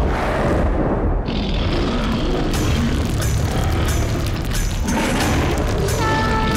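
Deep, continuous rumbling booms, with a run of short sharp cracks from about two and a half seconds in: a dramatised sound effect of a stone pillar splitting apart, over dramatic background music.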